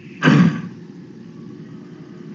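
A short vocal sound, a single syllable or breath, about a quarter second in, then a steady low background hum and hiss on the voice-chat line.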